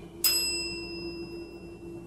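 A single high, bell-like ding a quarter second in, ringing out and fading over about a second and a half, over a steady low hum.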